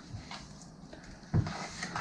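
Quiet hand-handling of raw chicken pieces in a tray, with a soft knock a little past halfway.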